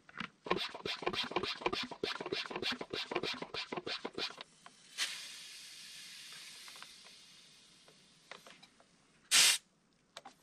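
Hand-pump garden pressure sprayer being pumped up, rapid strokes of the plunger at about five a second for around four seconds. Then a hiss from the pressurised sprayer that fades away over about three seconds, and a short loud burst of hiss near the end.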